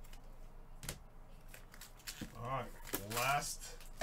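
Encased trading card in its hard plastic case handled with nitrile-gloved hands, with a sharp click about a second in. A man's voice is heard through the second half, louder than the handling.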